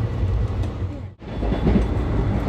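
Netaji Express passenger coach running, its rumble heard from inside the carriage. The sound cuts out briefly a little over a second in, then picks up again.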